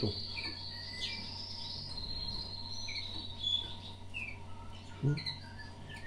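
Small songbirds chirping: a long, high, thin trill over the first couple of seconds, then scattered short high chirps.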